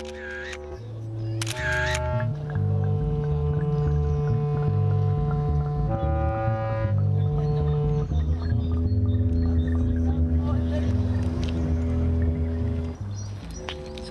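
Two camera shutter clicks early on, over slow music of long held electronic-sounding tones that change pitch every second or so above a low, steady bass.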